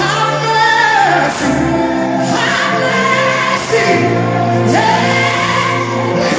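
A gospel song performed live: a male lead singer on a handheld microphone with female backing singers and a band, the voices holding long sung notes over sustained chords.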